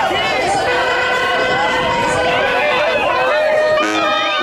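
Crowd voices shouting and whooping around a Mexican brass band (banda). The band holds one long brass chord about a second in, then strikes up a tune with tuba and horns near the end.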